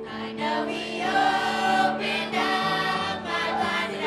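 A church choir of men, women and children singing a gospel song together, over steady sustained accompaniment notes.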